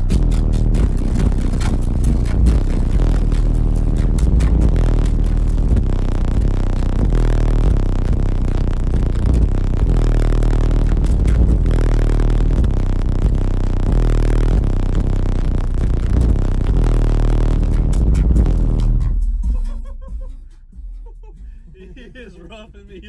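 Truck's subwoofer wall playing bass-heavy electronic music at extreme volume, heard from inside the cabin, as a run for an SPL meter reading of about 165 dB. The heavy, pulsing bass cuts off about 19 seconds in.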